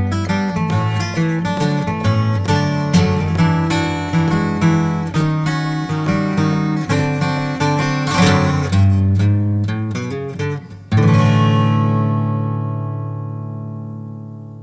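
Solo acoustic guitar played with picked notes over a moving bass line, ending on a final chord struck about eleven seconds in that rings out and slowly fades.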